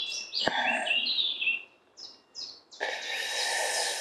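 Woodland birds singing, a run of high chirps and warbles, with a single sharp click about half a second in and about a second of rustling hiss near the end.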